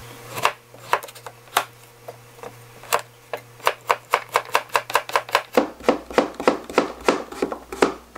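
Chef's knife slicing a young kabocha squash on a plastic cutting board: a few separate cuts at first, then a quick, even run of cuts, about four a second, from a few seconds in.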